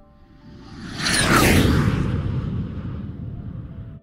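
Whoosh sound effect for a logo intro: a rush that builds over about a second, peaks with a falling whine, then fades and cuts off abruptly.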